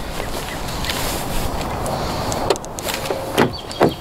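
Steady outdoor background noise, with a few sharp clicks and knocks in the second half as a gloved hand works the car's rear door handle.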